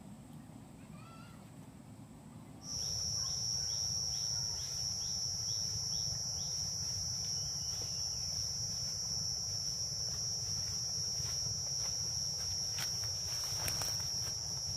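A steady, high-pitched insect drone, typical of forest cicadas, sets in abruptly about three seconds in, after faint bird chirps. A short repeated call comes about twice a second for a few seconds after the drone starts, and crackling footsteps on dry leaf litter are heard near the end.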